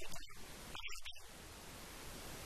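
A man preaching into a microphone, his amplified voice breaking off a little over a second in. A steady even hiss follows.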